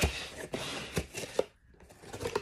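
Hands rummaging inside a cardboard shipping box, rustling the packing and handling the boxed figures inside, with a few light knocks of cardboard on cardboard.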